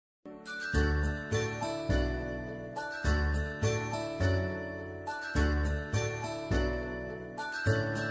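Background music: a light, bell-like tinkling melody over low bass notes, repeating the same short phrase about every two and a half seconds.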